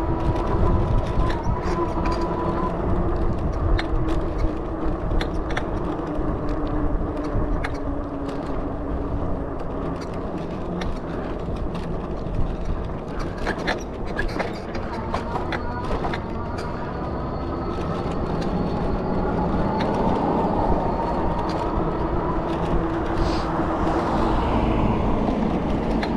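Riding noise from a bicycle on a bumpy paved path: steady wind rumble on the microphone and tyre noise. Short rattles and knocks come from bumps in the path, over a faint whine that rises and falls in pitch.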